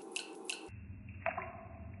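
Orange juice poured from a plastic bottle into a glass, faint, with a few short glugs in the first half second and a small tick near the middle.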